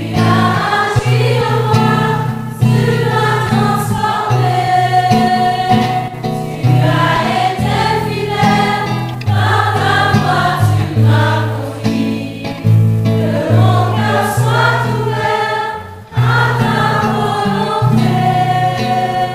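Church choir singing a hymn in several voices, with instrumental accompaniment carrying a bass line that steps from note to note.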